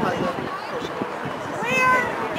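Scattered voices of players and spectators calling out during a field hockey game, then near the end one loud, high-pitched shout that rises in pitch and is held briefly.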